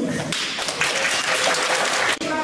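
Audience of parents clapping, a steady patter of many hands that starts just after a child's recited poem ends.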